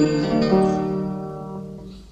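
Instrumental music from an old film soundtrack: a chord on a plucked string instrument sounds about half a second in and rings out, fading steadily, in a pause between the sung lines of a children's Christmas carol.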